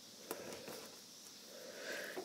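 Faint handling sounds of a duct tape strip being folded over by hand, with a light tick shortly after the start.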